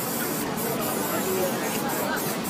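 Aerosol spray-paint can hissing as paint is sprayed onto the board, with a couple of brief breaks in the spray.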